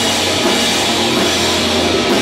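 Rock band playing live and loud: a Pearl drum kit with cymbals driving the beat under electric guitar, in a heavy-rock style.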